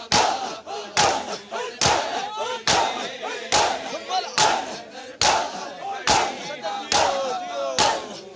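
A large crowd of men beating their chests with their open hands in unison (hath ka matam). There is a sharp slap roughly every 0.85 seconds, with the crowd's shouted chanting between the strikes.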